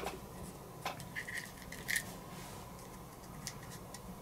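Faint handling sounds of fingertips lightly tapping and rubbing textured adhesive grip tape onto a pistol frame: a few scattered soft ticks and light scrapes.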